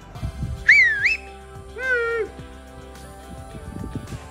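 A man's loud attention-getting whistle about a second in, a quick up-down-up glide, calling to someone down the street, followed by a short shouted call, over steady background music.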